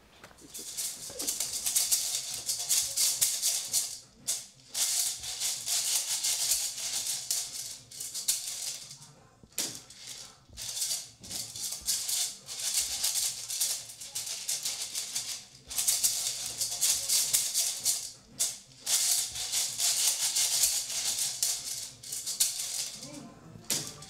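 A hand-held maraca wrapped in a beaded net, shaken hard in long rattling bursts with a few short pauses.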